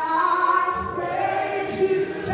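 Live gospel worship singing: a woman's voice holding long notes, shifting pitch about once a second, with other voices singing along.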